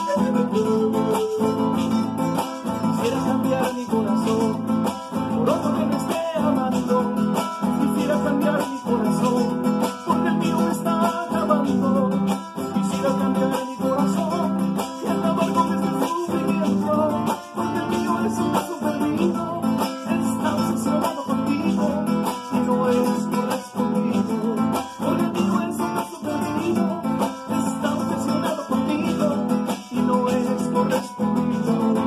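Acoustic guitar strumming a steady cumbia rhythm, with a panpipe melody at first and a man singing over it later.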